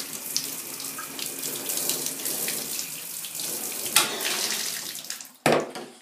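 Tap water running and splashing while a small dog is washed, with scattered small splashes and drips. A sudden louder sound comes about four seconds in, and another near the end as the running water dies away.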